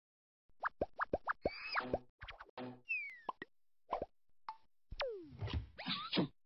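Cartoon sound effects: a quick run of short plops, each dropping in pitch, starting about half a second in, then a few falling whistle-like glides and some lower thuds near the end.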